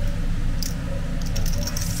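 A few light clicks and clinks from a small glass jar with a wire-clasp lid being handled, over a steady low hum.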